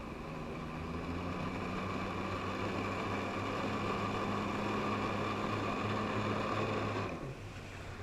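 Jet ski engine driving a Flyboard through its hose, running steadily under throttle with a whine. About seven seconds in the throttle comes off and the pitch falls away.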